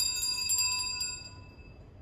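Sanctus (altar) bells shaken at the consecration of the host: a bright cluster of several high ringing tones, struck rapidly until about a second in, then ringing away.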